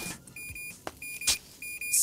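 Cartoon sound effect of a small electronic device: a run of short, high beeps, all on one pitch, several a second, with a few sharp clicks about a second in.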